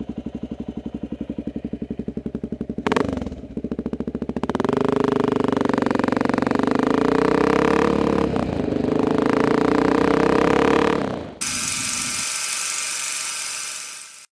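Honda XR600R single-cylinder four-stroke motorcycle engine running at low speed with distinct, even firing pulses, a sharp knock about three seconds in, then pulling louder and steadier as the bike gets under way. Near the end the engine sound cuts off abruptly and a different steady hissing sound takes over.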